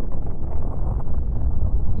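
Deep, steady rumbling sound effect, strongest in the low bass, with no tone or rhythm in it.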